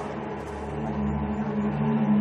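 Low, steady sustained drone of dramatic background score, a few held low notes that swell slightly about a second in.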